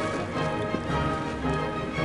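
Background instrumental music: held, layered notes that change every half second or so, at a steady level.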